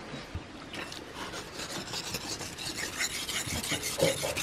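Steel knife blade being stroked back and forth by hand across a large natural sharpening stone, a repeated scraping rasp as the edge is honed.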